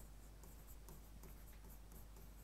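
Near silence with faint scratching and light taps of a pen writing on an interactive whiteboard screen.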